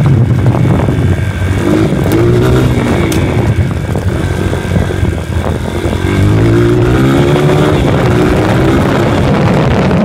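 Honda motocross dirt bike engine running under way, its revs rising and falling with the throttle: easing off about four to five seconds in, then climbing again about six seconds in. A couple of sharp clicks sound about two and three seconds in.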